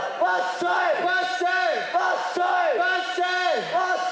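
A group of voices shouting a rhythmic chant in unison, about two calls a second, each call held and then falling away in pitch: yosakoi dancers' kakegoe shouts.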